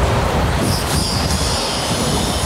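Heavy metal-framed glass door being pulled shut. It gives a loud, continuous grinding scrape with a high squeal over it, starting suddenly.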